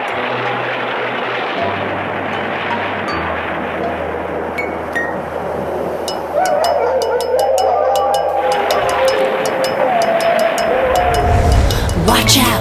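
Spooky cartoon music bed: a low drone under a steady hiss of rain. About halfway through, a regular ticking joins in.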